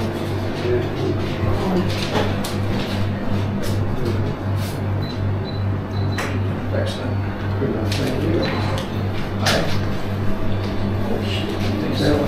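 Indoor pub ambience: indistinct chatter and background music over a low, evenly pulsing hum, with scattered knocks and clinks.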